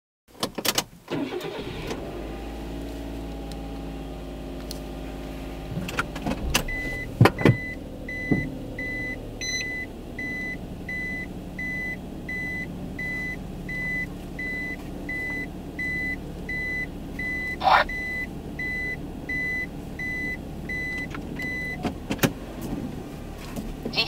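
A car engine cranks and catches about half a second in, then idles steadily inside the cabin. From about seven seconds in, a high in-car warning beep repeats a little more than once a second for about fifteen seconds, with a few sharp clicks from the controls.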